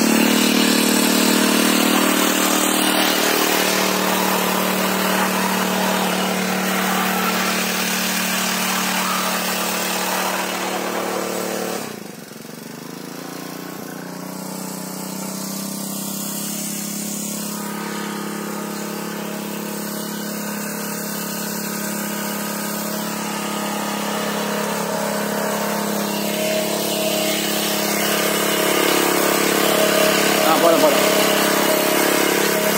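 Small petrol engine of a single-wheel power weeder running steadily. About twelve seconds in it suddenly gets quieter, then slowly builds back up toward the end.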